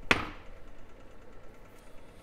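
A single sharp knock just after the start, fading within a fraction of a second, followed by faint room noise.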